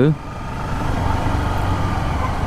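Honda CBR 250R's single-cylinder engine running as the motorcycle is ridden along, under a steady rumble of road and wind noise.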